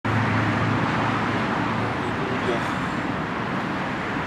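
Steady background noise of road traffic, a continuous even rumble with a low hum in the first second or so.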